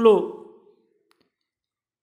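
A man's voice finishing a spoken word, then near silence with one faint click about a second in.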